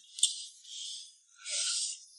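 Close-miked eating sounds from a person eating with chopsticks: a small click, then three short hissy mouth noises of chewing and slurping.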